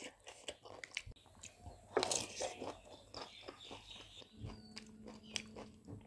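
A person chewing food close to the microphone: quiet wet mouth clicks and chewing, with one louder crunch about two seconds in.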